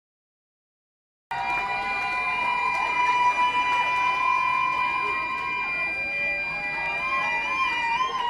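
Crowd of picketing nurses cheering and calling out, starting abruptly about a second in, with a long steady high tone held over the crowd for several seconds.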